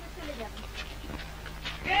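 A man calls out "Hey" loudly near the end, over a steady low hum from the old film soundtrack, with faint short vocal sounds before it.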